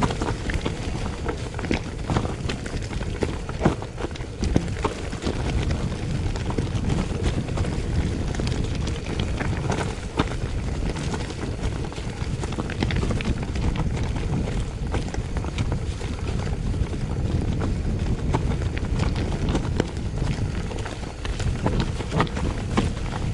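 Mountain bike rolling fast down a dirt singletrack: tyres running over earth, dry leaves and stones, with frequent sharp knocks and rattles from the bike over the rough ground, under steady rumbling wind noise on the microphone.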